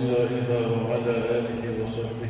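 A man's voice reciting Quranic Arabic in a slow, drawn-out melodic chant, holding long notes whose pitch shifts gradually.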